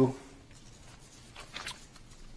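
Quiet room tone with a brief, faint rustle of paper pages being handled about one and a half seconds in.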